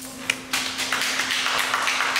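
Small audience applauding, starting about half a second in after a single sharp click.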